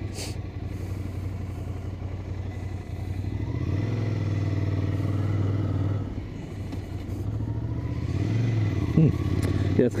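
Ducati Scrambler's air-cooled L-twin engine running under way at town speed, heard from on the bike. It pulls harder about three and a half seconds in, eases off around six seconds, and pulls up again before easing near the end.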